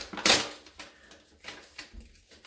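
Paper and card being handled: one short, sharp rustle just after the start, then a few faint ticks and light rustles.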